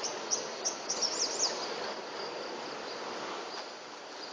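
Dawn insect chorus trilling steadily, with a quick run of short high bird chirps in the first second and a half.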